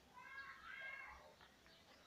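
A faint, high-pitched cry in two short parts in the first second or so, otherwise near silence.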